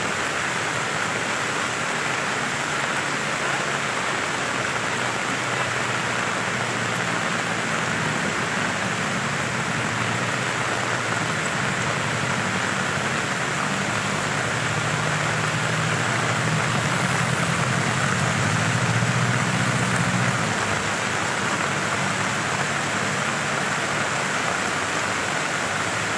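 Floodwater rushing through a street in heavy rain: a steady, unbroken rush of torrent and downpour, growing a little louder and deeper about midway.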